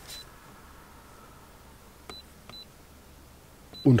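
Launch CRP123 OBD2 scan tool's key-press beeps: four short, high beeps as its buttons are pressed to confirm clearing the fault memory and step back through the menu.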